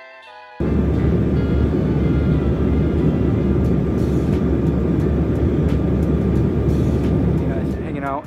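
Music stops and, about half a second in, the loud steady low rumble of an airliner cabin in flight takes over.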